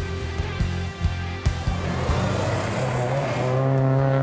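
Rock music with guitar and drums, which stops about a second and a half in. After that come the engines of cars on a race circuit, with one steady engine note growing louder near the end.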